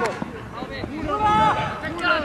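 Voices shouting across an open field, with one loud, drawn-out call about a second in.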